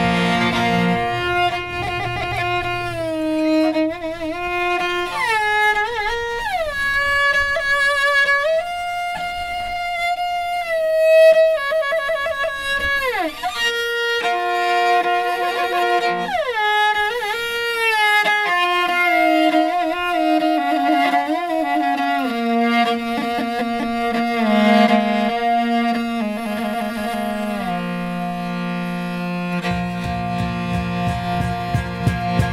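Morin khuur (Mongolian horse-head fiddle) playing a solo melody, holding notes and sliding between them. A low accompaniment drops away about three seconds in and comes back near the end.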